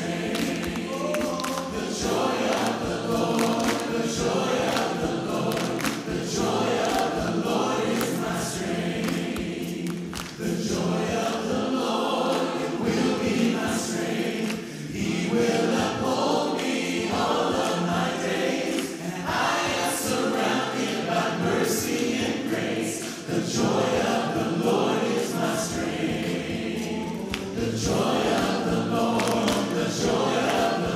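Mixed vocal ensemble of eight men and women singing a worship song in harmony through handheld microphones, in sustained phrases of a few seconds each.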